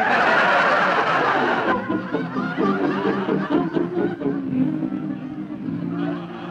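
Studio audience laughing loudly. The laughter fades out about two seconds in, and a music bridge with held notes takes over.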